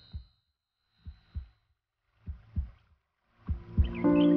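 Heartbeat sound effect: four evenly spaced double thumps, lub-dub, about 1.2 seconds apart, the last beat louder. It stands for a racing heart.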